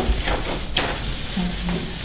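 Handling noise on a tabletop: paper and small cards being rustled and slid about, with a brief sharper rustle under a second in and faint murmured voices.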